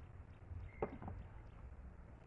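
Faint low rumble of wind on the microphone, with a single soft knock a little under a second in.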